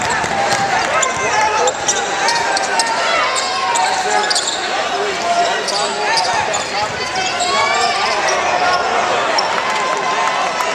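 A basketball bouncing on a hardwood gym floor with sharp knocks, under many overlapping voices of players and spectators shouting and talking in the gym.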